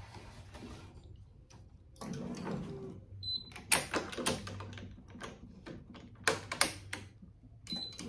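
Sharp clicks and clacks of string clamps and the stringing machine's tensioner as a racquet string is pulled to tension and clamped, in two quick groups of about three. A short high beep sounds twice.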